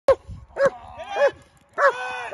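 German Shepherd barking while held back by its harness before being released for protection work: four short, loud barks about half a second apart.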